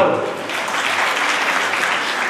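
Audience applauding, a burst of clapping lasting about two seconds between a speaker's remarks.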